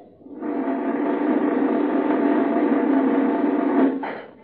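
A sustained, steady musical sting in a radio drama: a held chord that swells in over about half a second, stays level for over three seconds, then cuts off at the end.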